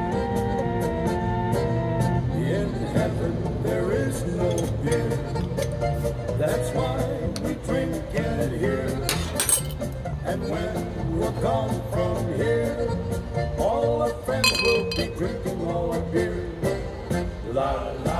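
Polka music with a male voice singing over a steady, even beat. A sharp click about nine seconds in, as the beer bottle is opened, and a brief glass clink about fourteen and a half seconds in.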